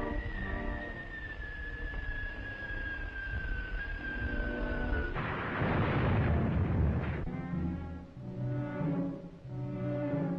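Old film-trailer soundtrack: dramatic orchestral music under a long, slowly falling whistling tone, then an explosion about five seconds in that lasts about two seconds, after which the orchestra plays on.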